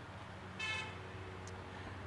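A short, faint car horn toot about half a second in, over a steady low outdoor background hum.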